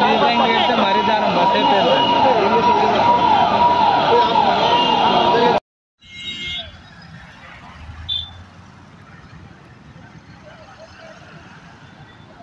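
Several sirens wailing over one another, their pitch sweeping up and down about once a second, most likely fire engines at a vehicle fire. The sound cuts off suddenly about five and a half seconds in and gives way to much quieter street noise.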